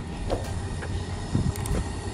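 Traxxas X-Maxx electric RC monster truck driving over grass, heard as an uneven low rumble with scattered light clicks, swelling briefly about halfway through.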